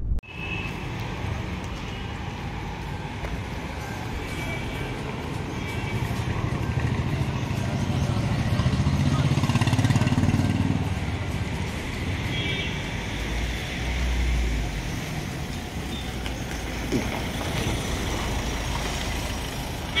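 Street traffic noise, with a vehicle engine's low rumble swelling to its loudest around the middle and then easing off.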